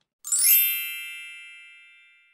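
Sparkle chime sound effect: a quick upward shimmer about a quarter second in, then a cluster of high bell-like tones ringing out and fading over about two seconds.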